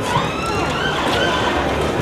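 A siren wailing, its pitch rising slowly, over the chatter of a busy crowd.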